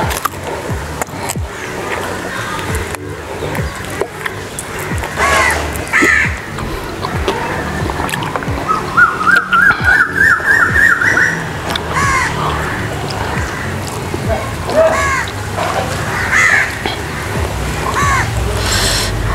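Background music with birds calling, including short calls scattered through and a run of about eight repeated notes climbing in pitch near the middle.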